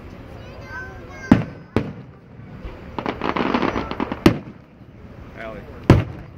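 Aerial fireworks shells bursting: four sharp booms, one about a second in, another just after it, one a little past four seconds and one near the end.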